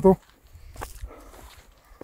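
Faint footsteps on a rocky, dry-grass mountain trail, with one sharper crunch or snap about a second in.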